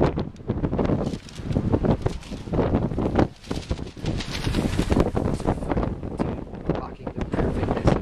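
Wind buffeting a camcorder's microphone, in uneven gusts with a heavy low rumble.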